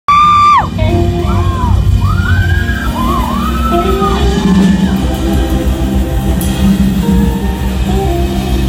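Live pop-rock band playing a song's instrumental opening, loud throughout, with a high held note at the very start and high yells rising and falling over the music.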